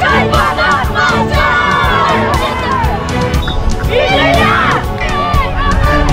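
A group of children shouting a team cheer together in a huddle, in two bursts: a long one over the first three seconds and a shorter one about four seconds in.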